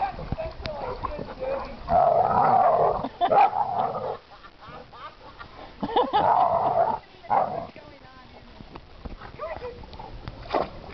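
Dogs vocalizing at close range in several loud bursts, the longest about a second, around two seconds in and again around six seconds in.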